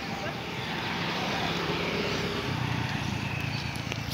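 Outdoor background noise with indistinct voices and a vehicle's low engine hum that grows louder about halfway through.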